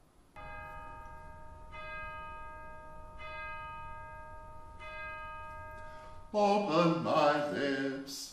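A bell-like tone struck four times, about a second and a half apart, each stroke ringing on into the next. Near the end a man's voice starts chanting.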